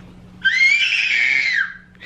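A toddler's single high-pitched scream, about a second and a half long, rising slightly and then sliding down as it ends.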